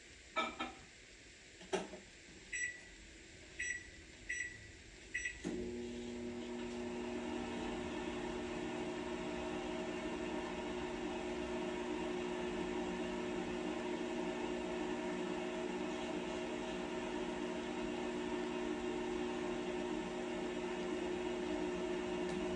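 Microwave oven: a couple of clicks, then four short keypad beeps, and from about five and a half seconds in the oven starts and runs with a steady hum.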